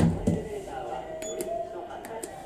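Elevator door thudding to a stop at the start, with a second lighter knock just after, then a few light clicks with a brief high beep a little over a second in.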